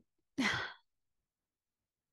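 A woman's short breathy sigh, about half a second long and falling in pitch, a few tenths of a second in.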